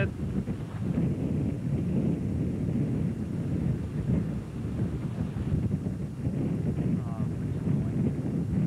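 Strong gusty wind buffeting the microphone: a low rumble that surges and dips.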